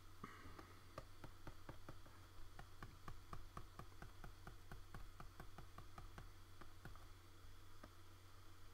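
Faint rapid clicking from input at the drawing computer, about three or four clicks a second, stopping about a second before the end, over a low steady hum.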